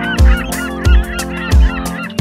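A flock of gulls calling, many short overlapping cries, over the song's instrumental backing with a steady low beat about every two-thirds of a second.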